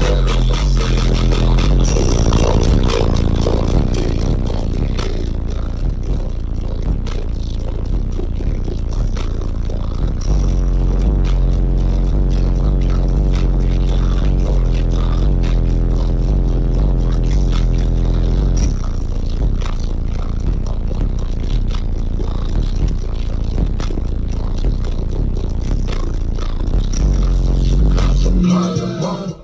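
Music with very deep, sustained bass notes played at extreme volume through a 100,000-watt car audio system's subwoofers, heard from inside the vehicle's cabin. A heavy stretch of low bass runs through the middle. Scraping and rattling noise sits over the music.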